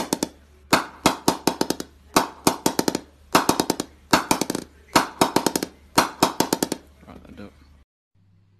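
A wooden bat mallet tapping the face of a willow cricket bat in quick runs of several strikes, about one run a second, each strike with a short ringing 'ping'. This is the ping the willow gives when struck, which bat makers listen to in judging a bat.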